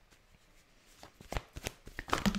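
A deck of tarot cards shuffled by hand: faint card rustling at first, then several crisp card snaps in the second half.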